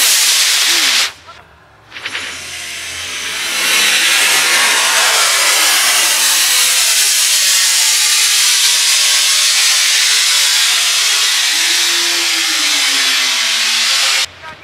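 Estes model rocket motor firing at lift-off: a loud rushing hiss for about a second that cuts off abruptly. After a short gap comes a long, steady rushing hiss that builds over a couple of seconds and stops abruptly near the end.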